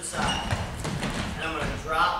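Untranscribed chatter of several people, mixed with low thuds and shuffles of feet moving on wrestling mats.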